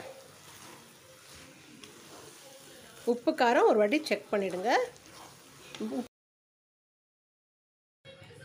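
Faint sizzling of a tomato-onion mixture in a pan, with light scraping as it is stirred with a wooden spatula, for about three seconds. The sound cuts to dead silence about six seconds in.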